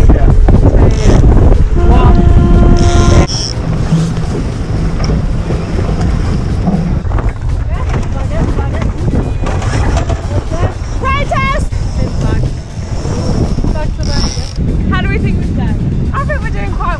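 Wind buffeting the microphone and water rushing along the hull of a small racing keelboat under sail, heaviest in the first three seconds and lighter after.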